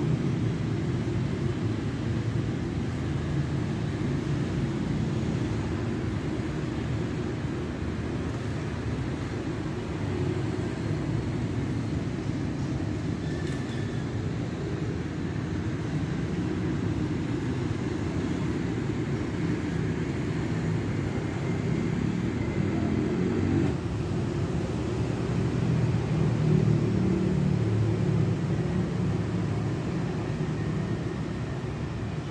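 The petrol engine of an old Isuzu fire truck idling with a steady low rumble that swells a little near the end.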